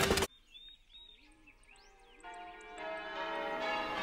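A loud burst of noise cuts off just after the start. Faint bird chirps follow, then about two seconds in church bells start ringing, several tones together, growing louder.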